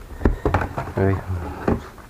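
Cardboard box being opened and handled, giving a few sharp knocks and scrapes of cardboard in the first second, and another knock near the end.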